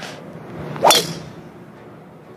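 Golf driver striking a teed ball: one sharp, loud crack about a second in, with a short ring fading after it.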